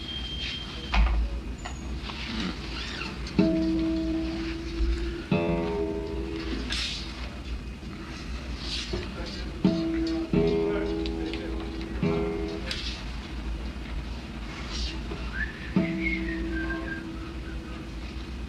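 Acoustic guitar being tuned: strings plucked one at a time, about six times, each note left to ring out and fade.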